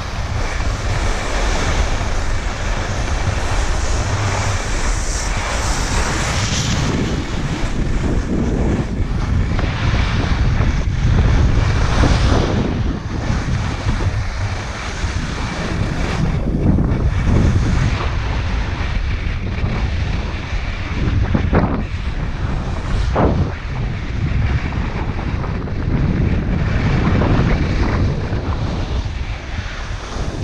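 Wind buffeting the microphone with a loud, steady rumble during a downhill ski run, over the hiss and scrape of skis sliding on packed, groomed snow, surging now and then.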